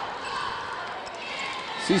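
A basketball being dribbled on a hardwood court, with the steady hum of the arena crowd behind it.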